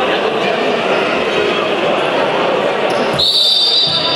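Crowd chatter echoing in a sports hall. About three seconds in, a referee's whistle gives one sharp blast about a second long, the signal for the kick-off of a futsal match.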